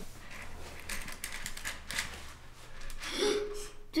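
Pick-up sticks (Mikado) being handled on a tabletop: scattered light clicks and taps as the sticks knock against each other and the table.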